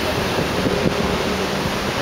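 Wind buffeting a handheld camera's microphone: a steady rushing noise with an unsteady low rumble.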